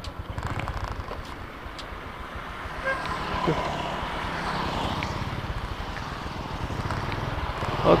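Road traffic noise: a steady engine-and-wind rumble with cars and motorcycles passing close by at a road junction.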